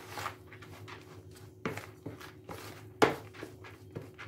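Wooden spoon stirring damp, water-soaked fine bulgur in a plastic mixing bowl: irregular scrapes and knocks of the spoon against the bowl, the loudest about three seconds in.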